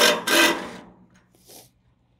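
Cordless drill driving a quarter-inch self-tapping screw into the container's 3–5 mm steel footer, a loud whirring rasp that fades out after about a second. The screw snaps off in the steel.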